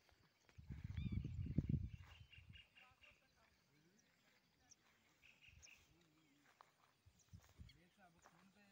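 Faint distant voices, with a low rumble for about a second and a half near the start and a few faint high chirps.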